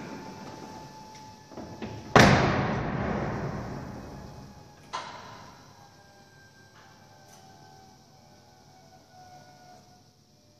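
Lamborghini Gallardo Spyder's door pulled shut from inside with one loud slam about two seconds in, ringing on for a couple of seconds in the concrete parking garage. A smaller sharp click follows about three seconds later.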